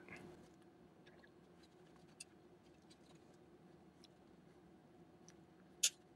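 Side cutters snipping thin plastic around an RFID chip: a few faint, sparse clicks, with one sharper snip near the end, over a low steady room hum.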